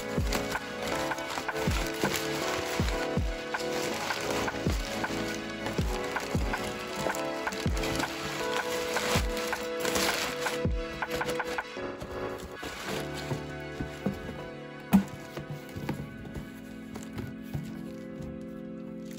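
Crumpled packing paper rustling and crinkling as it is pulled out of a cardboard box, over soft background music with a steady beat. The rustling dies down after about eleven seconds, and a single sharp knock comes near the end.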